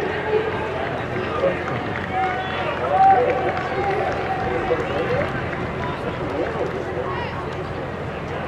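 Spectators chattering in a stadium, many voices overlapping, with one voice rising louder about three seconds in.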